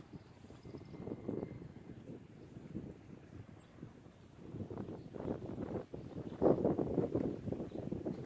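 Wind buffeting an outdoor microphone in uneven gusts, strongest about six and a half seconds in.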